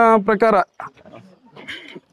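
A Jamunapari goat bleating: one loud, wavering call that ends about half a second in, followed by faint handling sounds.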